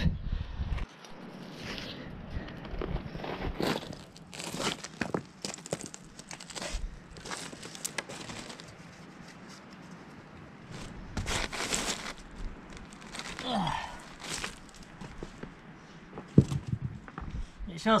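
Boots crunching and shifting over beach pebbles and cobbles, with irregular clacks and scrapes of stone on stone and one sharper knock about three quarters of the way through.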